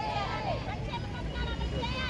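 Several women's voices talking in the background, over a steady low rumble of road traffic.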